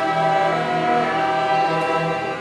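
A youth string orchestra playing, with a violin leading over the section in sustained, held chords.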